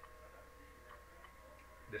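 Very quiet room tone: a steady low hum with a faint steady tone above it, and three or four faint ticks spaced through the pause.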